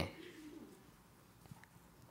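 A quiet pause in a hall's room tone: a faint low murmur in the first half-second or so, then a single soft click about one and a half seconds in.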